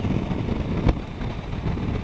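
Triumph Tiger 800 XRx motorcycle riding along steadily, with wind rushing over the microphone on top of the three-cylinder engine and tyre noise. A single sharp click sounds a little before the middle.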